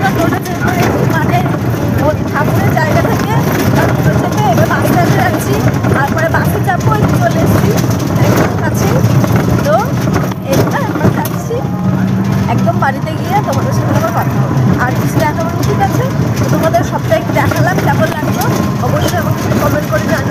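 Steady low running hum and road noise of a moving motorised rickshaw, heard from the passenger seat, with voices mixed in.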